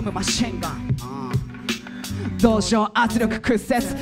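Hip hop music played live through PA speakers: a beat with regular drum hits and a steady bass, with rapped vocals over it.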